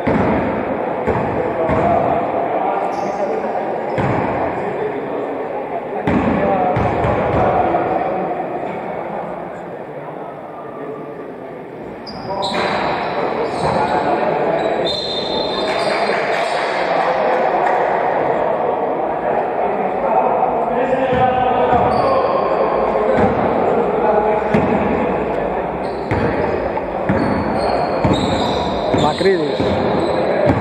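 Basketball bouncing on a hardwood court in a large, echoing sports hall, with players' voices and calls heard throughout.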